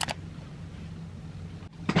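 A steady low hum, with a brief click right at the start.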